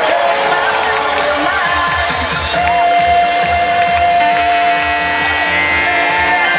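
Music and crowd din in a packed ski-jumping stadium. Long held tones run over the noise, some sliding up and down in pitch, one held steadily for more than two seconds in the middle.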